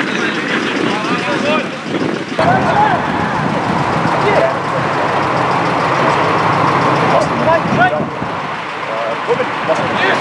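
Players shouting and calling to each other on an outdoor football pitch, short scattered shouts over a steady rushing background noise.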